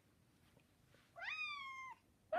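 A house cat meowing once, about a second in: a single call that rises quickly in pitch and then slowly falls away.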